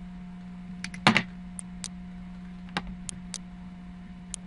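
A few scattered clicks of computer keys, about eight irregular taps with one louder knock about a second in, over a steady low hum.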